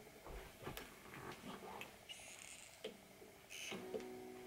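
Faint rustling and light knocks as a steel-string acoustic guitar is picked up and settled into playing position, with its strings ringing softly near the end.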